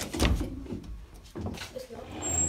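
A door latch clunking as its lever handle is pressed and the door is opened, with a sharp knock about a quarter second in and another about a second and a half in.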